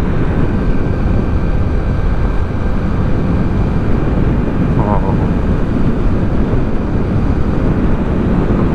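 Yamaha YB125SP's 125 cc single-cylinder four-stroke engine running at steady cruising speed, mixed with heavy wind rushing over the camera microphone. A brief vocal sound about five seconds in.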